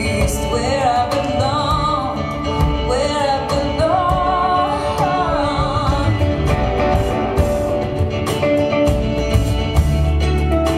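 Live folk-rock performance: a woman singing drawn-out, bending melody lines over acoustic guitar, with drums and cymbals keeping time.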